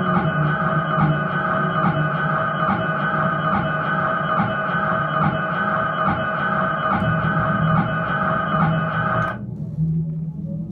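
Live instrumental jam of an amplified electric guitar with electronics: a held, droning chord over a pulsing low line and a soft regular tick. The high drone cuts off suddenly near the end, leaving the low part.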